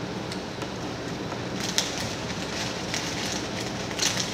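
Food wrapper paper crinkling and crackling as it is handled, in quick irregular clicks that thicken from under halfway in, over a steady low room hum.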